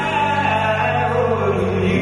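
Three male voices singing in close harmony with a live band, holding a long chord over a steady bass note that breaks off near the end. The recording is poor.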